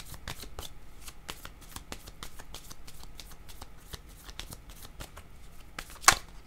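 A deck of oracle cards being shuffled by hand: a quick, irregular run of light clicks and slaps as the cards fall against each other.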